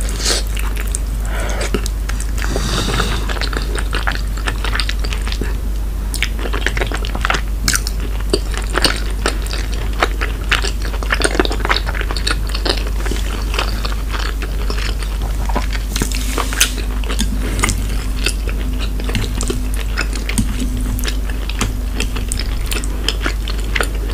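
Close-miked chewing of cheesy shrimp gratin: mouth sounds with many small, irregular clicks and smacks.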